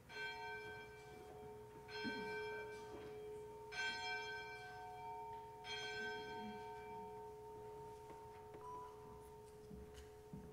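Handbell choir ringing four slow chords about two seconds apart. Each chord is struck and left to ring and fade, and the lower bells hum on underneath. A single higher bell tone sounds near the end.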